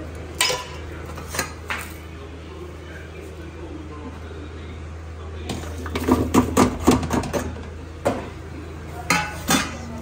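Steel dishes and utensils clinking at a stainless-steel kitchen sink: a few single clinks early, then a quick run of knocks about six seconds in as vegetable scraps are scraped from a glass bowl into a plastic bin, and a few more clinks near the end. A steady low hum runs underneath.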